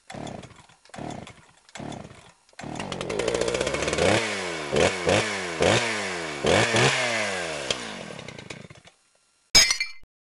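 A small engine is pull-started with three short cranking bursts, then catches and runs. Its throttle is blipped several times, the revs falling back after each, before it dies away. A brief, sharp, loud noise comes near the end.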